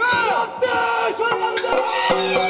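Loud, wavering war cries from Yakshagana stage performers, several arching up and falling in pitch, over a steady held tone.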